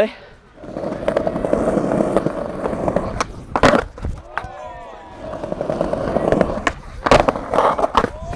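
Skateboard wheels rolling over paving slabs, broken by a sharp clack of the board about three and a half seconds in as a trick is tried. The board rolls again and clacks down once more about seven seconds in.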